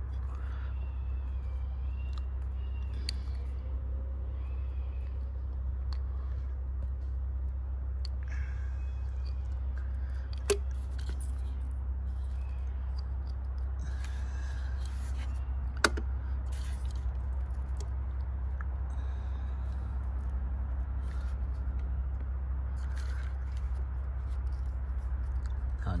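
A steady low rumble throughout, with two sharp clicks about ten and sixteen seconds in as the new fuel injector and its plastic connector are handled and pushed into place on the fuel rail.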